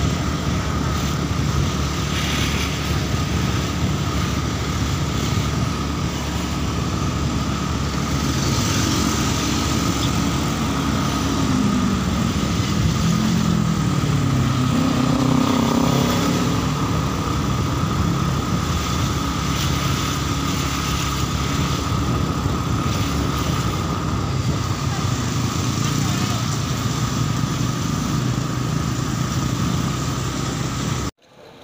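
Small motorcycle engine running while riding along a street, heard from the seat with wind and road noise; about halfway through the engine note drops and climbs again as the bike slows and picks up speed.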